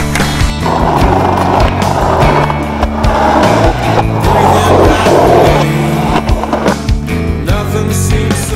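Skateboard wheels rolling and scraping on concrete, with sharp clacks of the board, from about half a second in until near the end, over a rock music track.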